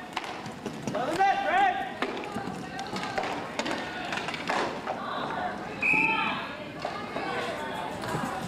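Indoor roller hockey play: sharp clacks of sticks and puck on the rink floor, with voices shouting about a second in. A short, high referee's whistle blast comes about six seconds in, stopping play.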